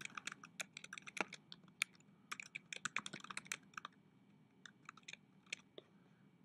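Typing on a computer keyboard: a quick run of key clicks for about four seconds, then a few scattered keystrokes.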